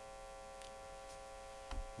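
Steady electrical hum from the sound system, several constant tones held at a low level, with a soft low bump near the end.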